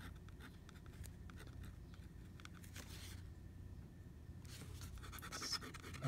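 Fountain pen nib faintly scratching across paper in a run of short hatching strokes, with a pause of a second or so about halfway through. The pen is drawn slowly to test whether its carbon ink still skips.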